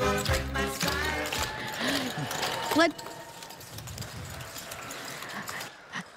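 Clogging shoe taps on a wooden stage floor over upbeat music, which ends about a second and a half in. Then a whoop and a few seconds of audience cheering and clapping.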